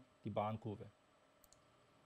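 A man's voice trailing off in the first second, then near silence with one faint, high click about one and a half seconds in.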